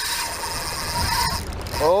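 Baitcasting reel's spool whirring as line pays out on a cast, heard over heavy wind noise on the microphone; the whir stops suddenly near the end.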